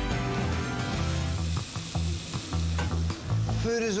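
Food sizzling in a frying pan, with a few light clicks, over a music bed with a steady stepping bass line. A man's voice begins right at the end.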